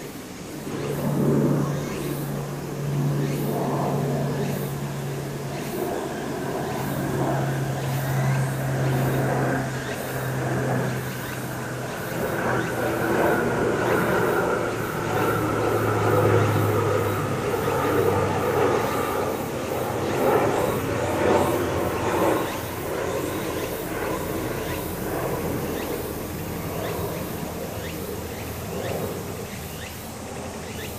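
A small stream running over a shallow sandy bed, overlaid by the steady low hum of a passing vehicle's engine, which drops in pitch about halfway through and fades toward the end. Cicadas pulse faintly in the background.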